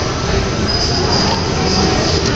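Honda ASIMO humanoid robot's servo motors and cooling fan running with a steady whir and a high-pitched whine.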